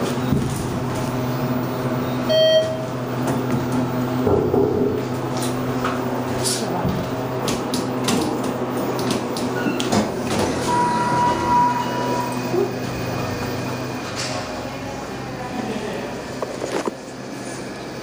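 ThyssenKrupp Synergy hydraulic elevator in motion, heard from inside the cab: a steady low hum while the car travels, fading near the end as it stops and the doors open. A short chime sounds about two seconds in, and a held single tone comes about halfway through.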